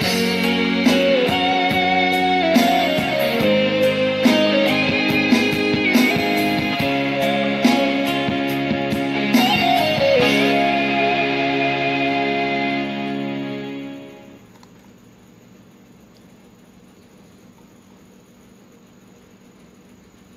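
Karaoke backing track playing an instrumental passage led by a guitar melody, which ends about fourteen seconds in and leaves only a faint hiss.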